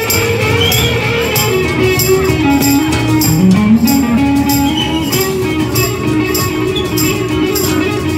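A live band playing an instrumental passage: an electric guitar lead line that slides down and then bends up about three seconds in, over strummed acoustic guitar. Steady percussion hits mark the beat about twice a second.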